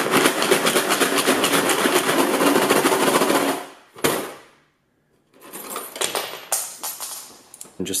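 Nails and screws rattling rapidly in a clear plastic jar shaken hard by hand, with an Apple Watch Ultra tumbling among them. The rattle stops about three and a half seconds in; after a short silence, lighter clinking and clicking follows.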